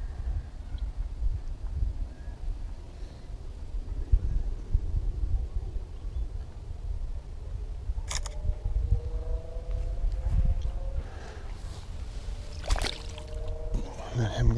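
A smartphone camera's shutter click about eight seconds in, over a steady low rumble on the microphone. A second sharp click comes near the end.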